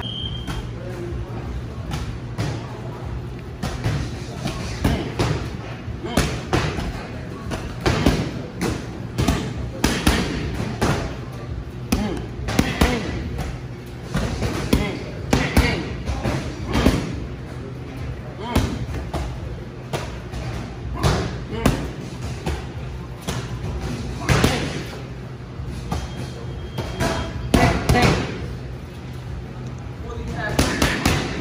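Boxing gloves smacking into focus mitts during pad work, sharp slaps coming in quick combinations of several punches with short pauses between them.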